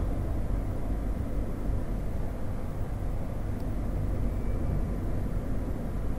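Steady low background rumble with a faint hiss. There are no distinct events.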